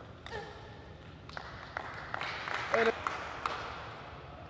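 Table tennis rally: the plastic ball is struck back and forth, giving a series of sharp clicks off rackets and table, with short squeaks in between.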